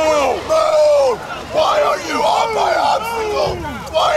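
Several voices shouting over one another in short yells that fall in pitch: drill-station commands barked at crawling participants.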